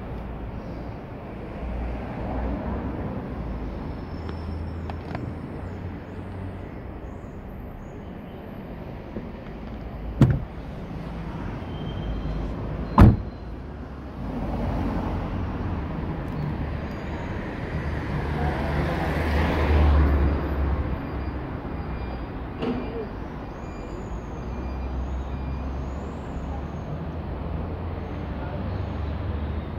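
Low street traffic noise with two sharp knocks about ten and thirteen seconds in, the second the louder: a car door being shut. A vehicle passes, swelling and fading, around twenty seconds in.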